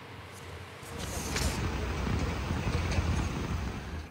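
Steady outdoor background noise with a low rumble, starting about a second in.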